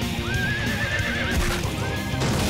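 A horse whinny: one call that rises, then breaks into a shaky, wavering trill for about a second, followed by a second, shorter rising whinny near the end, over heavy metal music.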